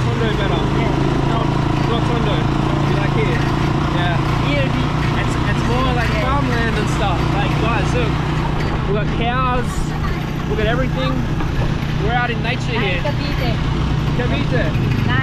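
Indistinct voices over a steady low drone of vehicle traffic.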